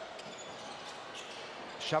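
Steady crowd murmur in an indoor basketball arena, with a few faint knocks from play on the court.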